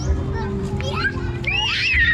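Children's voices on a busy street, with a high-pitched child's voice calling out near the end over a steady low hum.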